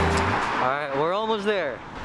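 A man's drawn-out wordless vocal sound, about a second long, sliding up and down in pitch, over street traffic noise. Background music cuts out at the start.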